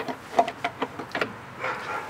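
A few short, light clicks, four or so within about a second, as gear parts of a Gravely tractor's high-low planetary assembly are turned and fitted by hand inside the transmission housing.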